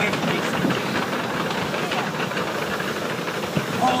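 Indistinct voices over a steady hiss of background noise.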